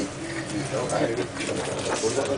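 Indistinct talk of several people close by in a small, crowded room, with no clear words.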